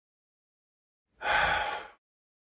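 A man sighing once: a single long, breathy exhale that starts a little over a second in.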